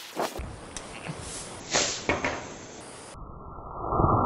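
A few sharp clicks and short crackles as a lighter is struck and the fuses of mini bottle rockets are lit. A hiss begins to build near the end.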